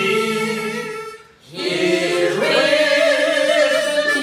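A hymn sung slowly in long held notes. The singing breaks briefly just after a second in, then a new line begins and steps up in pitch about halfway.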